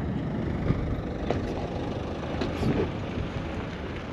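Royal Mail Peugeot Expert van driving in close by, its engine running steadily.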